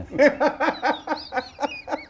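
Men laughing: a run of quick, even ha-ha pulses, about five or six a second.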